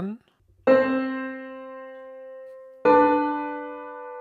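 Piano playing two two-note chords in whole notes, one about a second in and the next about two seconds later, each struck and left to ring away: a note-against-note counterpoint, the first chord an octave on C.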